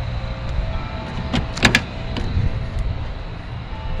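A car door being unlatched and opened, with a few sharp metallic clicks about a second and a half in, over a steady low rumble.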